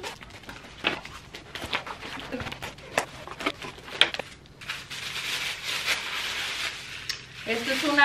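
A blade slicing through the packing tape on a cardboard box, with a run of sharp clicks and scrapes, followed by a few seconds of steady rustling as the flaps are opened and the paper packing around the contents is pulled out.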